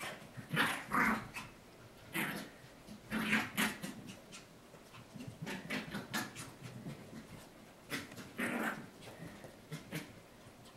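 Maltese puppy making short playful vocal noises in about five separate bursts while pushing and wrestling a ball.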